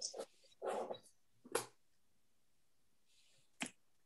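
A few brief, faint noises picked up on a video-call audio line: short puffs of noise in the first two seconds and a single sharp click near the end, with quiet gaps between.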